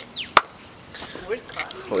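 A single sharp click about a third of a second in, just after a short falling high-pitched sound, with faint voices in the background.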